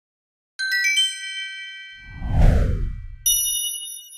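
Channel logo sting sound effects: a quick rising run of about five chime notes that ring on, then a whoosh with a deep boom at about two and a half seconds, the loudest part. A bright ding follows near the end and rings out.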